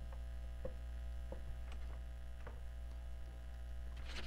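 Steady electrical mains hum, with a few faint light ticks of a marker writing on a whiteboard.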